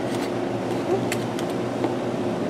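Steady low machine hum, with a few faint clicks.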